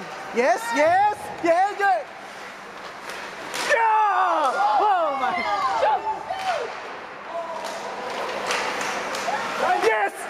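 Spectators shouting at an ice hockey game, over sharp knocks and slams of sticks, puck and players hitting the boards.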